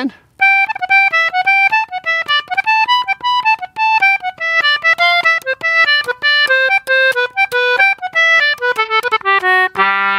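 Concertina playing the second part of a newly composed folk jig in G major: a quick run of short, detached notes that moves lower in pitch near the end.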